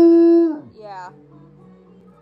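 Bloodhound howling: one loud, steady-pitched howl that falls away within the first second, then a shorter, wavering cry about a second in.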